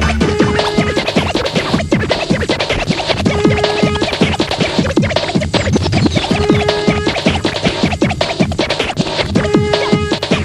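Early-1990s UK hardcore rave music from a DJ mix: fast, dense breakbeat drums with a short held synth note coming back about every three seconds, and a high falling sweep about five and a half seconds in.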